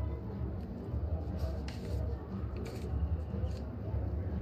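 Steady low arena hum with a few faint sharp clicks.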